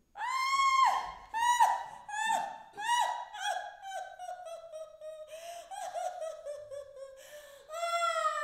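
A woman's high-pitched wordless vocal cries: about five sharp, falling cries in the first three seconds, then a quavering wail that slides slowly down in pitch.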